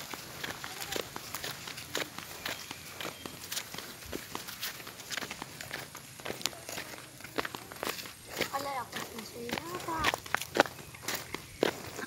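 Footsteps of a person walking over grass and a dirt path, a series of short, irregular steps.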